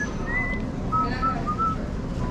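A person whistling a tune, the notes sliding from one pitch to the next, over a steady low background rumble.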